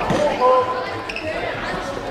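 An indoor football is kicked once right at the start, the thud echoing around a large sports hall. Shouting voices of players and spectators follow.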